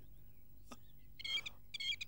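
A bird chirping during a pause in dialogue: two short bursts of quick, high chirps, the first just over a second in and the second near the end.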